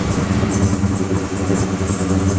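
Ultrasonic cleaning tank running, giving a steady mechanical hum with a constant high-pitched whine above it.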